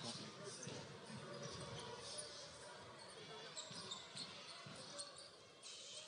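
Faint basketball dribbling on a hardwood court, with low arena ambience and distant voices.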